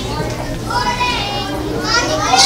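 A crowd of children's voices calling out together, rising and falling.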